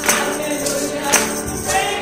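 Live gospel song: voices singing held notes, with a tambourine struck on the beat about twice a second.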